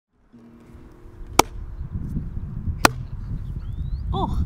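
Low rumbling wind noise on an outdoor microphone, with faint held tones at the start. Two sharp clicks about a second and a half apart are the loudest sounds, and a short rising whistle comes near the end.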